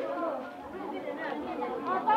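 Several people talking over one another: background market chatter.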